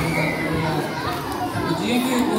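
Children's voices chattering and talking in a hall, mixed with speech.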